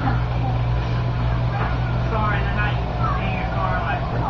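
Steady low hum, with faint voices in the background from about one and a half seconds in.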